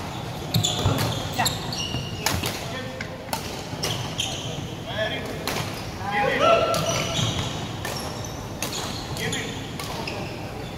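Badminton doubles play in a large sports hall: sharp racket strikes on the shuttlecock and short squeaks of court shoes on the wooden floor, with indistinct voices in the background.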